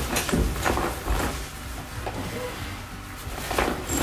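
Rustling and handling of a bag as a packed lunch is put into it, with several short knocks and scrapes, a cluster in the first second and another near the end.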